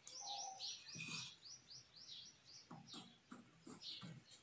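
A small bird calling a fast run of short, falling chirps, about five a second, for the first two and a half seconds, faint in the background. A few faint clicks follow near the end.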